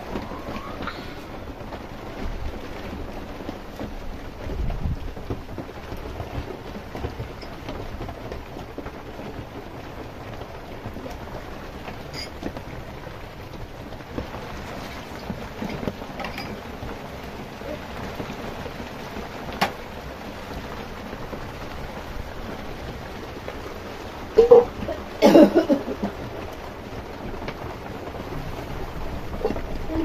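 Steady rain falling, with a low rumble about five seconds in and a short, loud pitched call about twenty-five seconds in.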